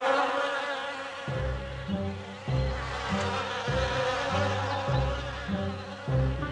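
Cartoon bee buzzing sound effect, a steady droning buzz of several bees. Background music with a regular bass beat comes in about a second in, under the buzzing.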